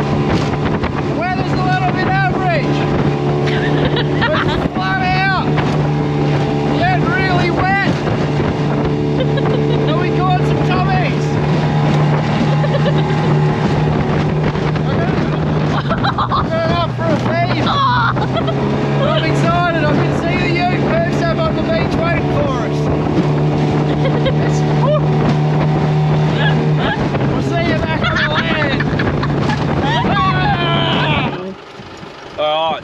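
Outboard motor on a small aluminium boat running at speed, a steady drone that dips in pitch a couple of times, with spray and wind on the microphone. A voice-like pitched sound comes back every few seconds over it.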